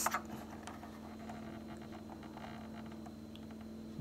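A few faint clicks in the first second from the buttons of a Zoom G1Xon multi-effects pedal being pressed to scroll to the next effect, over a steady low hum.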